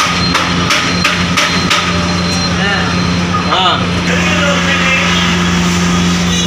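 A steady machine hum, with a quick run of sharp knocks over the first two seconds and a voice talking faintly in the background.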